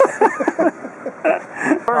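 People talking and laughing, with a single sharp click shortly before the end.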